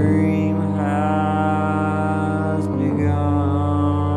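Keyboard synth holding sustained chords under a male voice singing long, sliding notes, with the chord changing about three seconds in.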